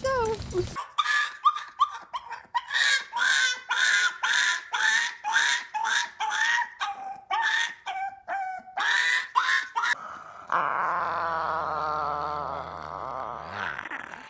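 A puppy yipping over and over, short high barks about two a second. Near the end a different, long drawn-out call takes over, with a low hum beneath it.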